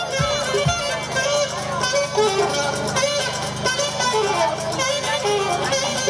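Saxophone playing short repetitive phrases live over a house-music backing track. The thudding kick-drum beat, about two a second, drops out about a second in, leaving a sustained low bass under the saxophone.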